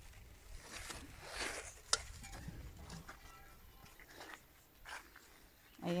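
Faint rustling of large squash leaves being brushed and handled, in soft swells, with a single sharp click about two seconds in.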